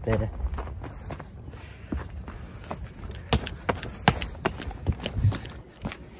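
Footsteps of a person walking, heard as scattered sharp knocks, over a low rumble of wind on the phone's microphone.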